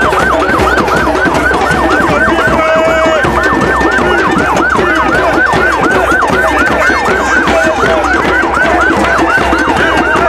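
Police siren yelping, its pitch sweeping up and down about four times a second without a break, over a crowd's conga drumming.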